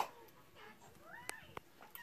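A faint, high-pitched call gliding up and down about a second in, with a few small clicks from the hard plastic toy in the toddler's hands.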